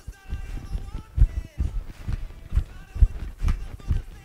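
Soft, irregular thumps of feet landing and stepping around a soccer ball on a carpeted floor, a few a second, over faint background music.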